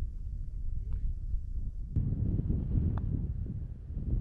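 Wind buffeting the microphone: a low, gusty rumble that grows stronger about two seconds in.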